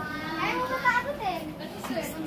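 Voices talking: speech that the recogniser did not catch as words.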